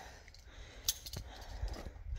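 Light metal clinks of via ferrata gear, carabiners and lanyard hardware knocking against the steel rungs and safety cable: two sharp clicks about a second in, over a low rumble.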